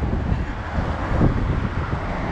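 Wind buffeting the camera's microphone in a rough, uneven low rumble, over the noise of street traffic.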